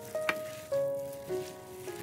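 Glass noodles and vegetables being tossed in a frying pan with a wooden spatula, with a light sizzle and stirring noise. Background music with piano-like notes runs through it, a new note about every half second.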